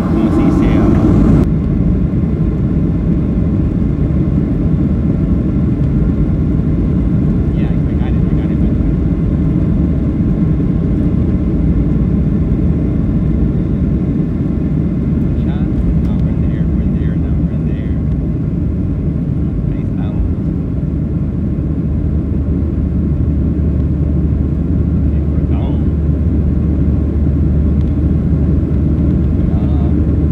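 Jet airliner takeoff heard from inside the cabin of a Southwest Airlines Boeing 737: a loud, steady rumble of the engines at takeoff power during the runway roll and lift-off. A deeper steady hum comes in about two-thirds of the way through, once the plane is climbing.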